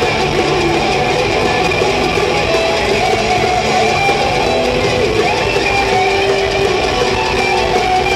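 Live folk-metal band playing over an arena sound system, recorded from the crowd: electric guitars holding sustained notes over drums, loud and steady.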